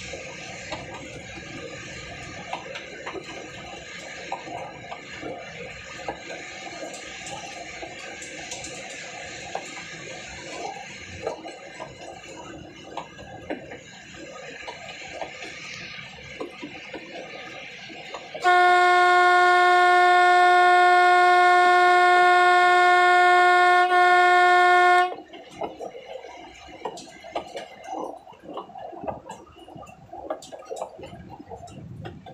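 A mountain toy train clattering steadily along the rails. About two-thirds of the way in, its horn sounds one long, loud, steady blast lasting about six seconds, then the clatter carries on.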